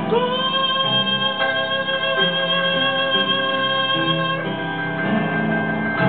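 Operatic tenor holding one long high note, scooping up into it, over instrumental accompaniment; the voice cuts off about four and a half seconds in and the accompaniment plays on to close the aria.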